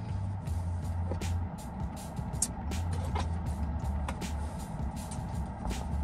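Background music, with a frozen slush drink being sipped through a straw: a run of short clicks from the cup and straw.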